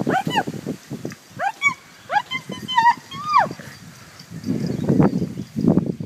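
Yorkshire terriers yapping and yelping in short, high, rising-and-falling cries, several in quick succession, during play. Near the end comes a run of low, rough grunting sounds.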